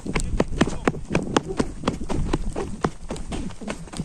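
Quick footsteps crunching over sandy, stony ground, about four a second in an even rhythm, with low rumble from the moving camera.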